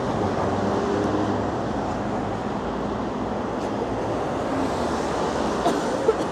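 Steady city road traffic: cars driving past on the street, with a low engine hum over tyre noise.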